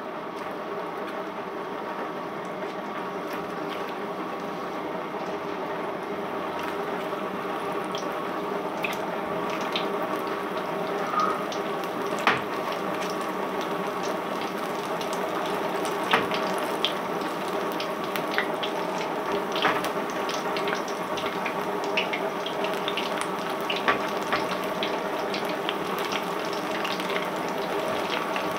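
Pakora batter deep-frying in hot oil in an iron karahi: a steady sizzle with scattered sharp pops, growing slightly louder as more pieces go in, over a steady low hum.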